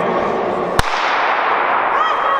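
Starting gun fired once for a sprint start: a single sharp crack a little under a second in, over steady background chatter of the crowd in the hall.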